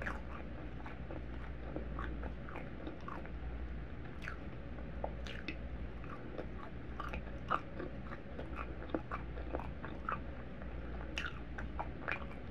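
Close-miked chewing of a mouthful of food, with irregular small wet mouth clicks and crunches.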